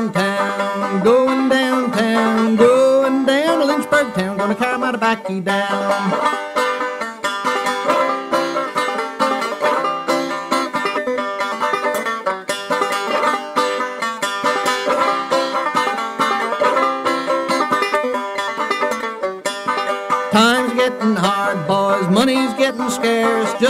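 Old-time string band playing an instrumental break: banjo to the fore over acoustic guitar, with a fiddle's sliding notes in the first few seconds and again near the end.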